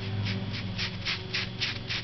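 Chinese painting brush working on rice paper: a quick, uneven series of short swishes, about three or four a second, over a steady low hum.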